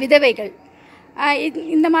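Only speech: a woman talking, with a short pause just before the middle.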